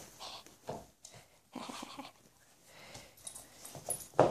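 A small dog breathing in short, irregular, soft bursts close to the microphone.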